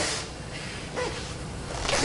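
A pause between a man's spoken phrases, mostly low room tone. There is a brief faint vocal sound about a second in, and a breath drawn just before he speaks again.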